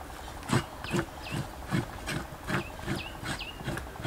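A knife blade scraping hair off a raw cow hide laid on a wooden board, in quick regular strokes, about two and a half a second.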